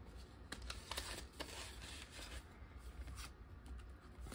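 Paper dollar bills and plastic binder pockets being handled, rustling faintly with a few light clicks scattered through, as cash is slipped into a savings binder's pocket.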